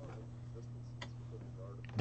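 Quiet room tone with a steady low electrical hum and one sharp click about a second in.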